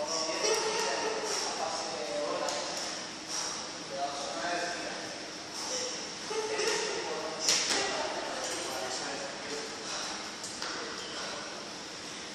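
Indistinct voices talking in the background, with a few short knocks, the clearest about seven and a half seconds in.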